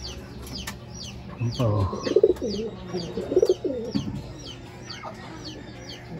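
Birds in a racing-pigeon loft: short, high, falling chirps repeating several times a second, with lower calls and a brief voice between about one and a half and four seconds in.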